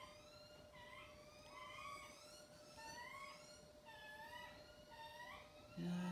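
A hen making about five soft, short rising calls, a second or so apart, while tweezers work at her ear.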